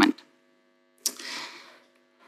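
Brief silence, then about a second in a faint steady electrical mains hum with a soft hiss from the talk's sound system, fading out near the end.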